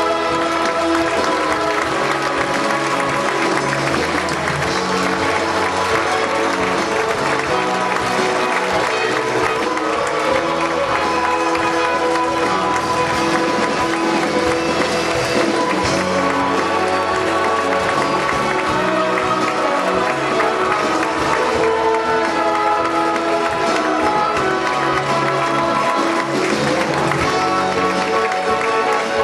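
Music-school symphony orchestra playing curtain-call music, with audience applause throughout.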